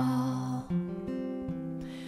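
Acoustic guitar played alone between sung lines: a chord rings, a new strum comes about two-thirds of a second in, and the notes fade softly.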